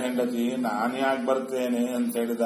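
A man reciting verses in a steady chant, his voice held on one pitch while the syllables change.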